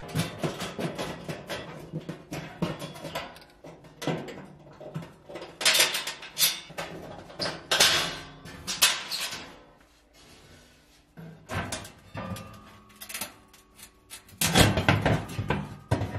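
Sheet-metal bottom pan of a gas oven being unfastened and taken out: a string of clicks and knocks with louder metal scrapes and clatter, the loudest near the end.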